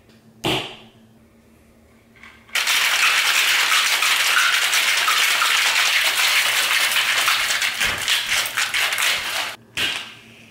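A copper two-tin cocktail shaker is given a sharp slap about half a second in to seat the tins. Then, after a pause, ice rattles hard inside it for about seven seconds as it is shaken vigorously, stopping just before the end.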